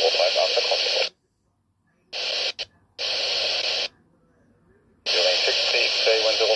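ICOM handheld airband receiver's speaker playing air traffic control radio: a voice transmission over hiss cuts off suddenly about a second in as the squelch closes. Two short bursts of plain hiss without a voice follow, the second close to a second long, and another voice transmission over hiss starts about five seconds in.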